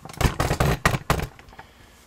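A flurry of handling noise on a workbench lasting about a second: knocks and scraping as a long metal bolt is set down on a sheet of paper.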